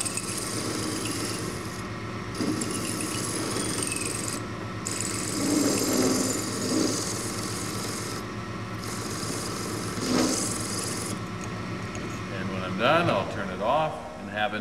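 South Bend bench lathe running over a steady motor hum, its tool bit taking light facing cuts on the end of a spinning metal tube. The cut sounds as a scraping rasp that stops and starts several times as the tool is fed in and out.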